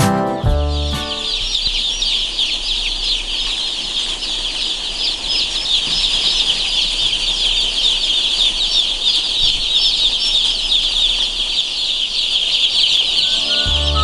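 A dense, continuous chorus of many young chicks peeping on a poultry-house floor, their high-pitched chirps overlapping into one steady mass of sound. Guitar music fades out in the first second.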